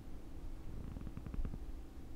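Low steady hum of room tone, with a short run of faint soft clicks about a second in.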